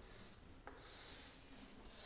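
Faint scratching of chalk on a chalkboard as straight lines are drawn to box a formula, with one light tap of the chalk about two-thirds of a second in.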